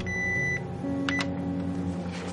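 Photocopier control-panel keys beeping as they are pressed: one longer beep at the start, then two short beeps about a second in, over a low steady hum.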